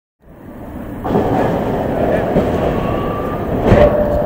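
Steady rumble of highway traffic passing close by a roadside stop, fading in over the first second, with faint voices under it.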